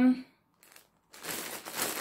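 Plastic shrink-wrap around a pack of yarn skeins crinkling as the pack is handled and turned over, starting a little over a second in after a brief silence.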